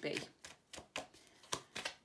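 A deck of tarot cards being shuffled by hand: a run of crisp, irregular clicks, about four a second, as the cards slap together.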